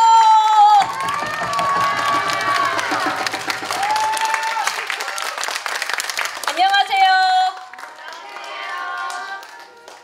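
A long steady held note ends just under a second in. Mixed voices and music with some clapping follow, then a few short calls and quieter voices near the end.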